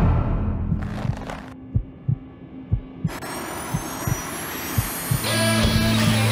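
Cinematic trailer sound design under music: low heartbeat-like thuds about twice a second, with a high whine rising steadily from about halfway, a jet-turbine spool-up effect for the turbine-powered Speeder. A steady low hum comes in near the end.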